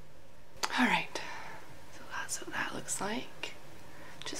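A woman speaking softly, close to a whisper, in short breathy phrases.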